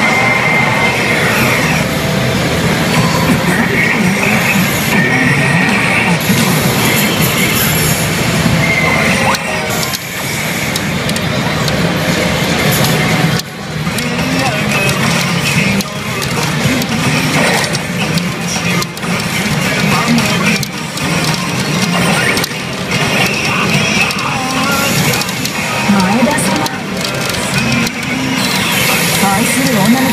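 Hana no Keiji pachinko machine playing its loud soundtrack: music with character voice lines over its on-screen animations.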